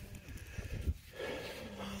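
Faint rustling close to the microphone, with a soft breathy hiss in the second half.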